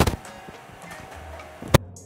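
Background music, with two sharp knocks: one at the start and a louder one near the end.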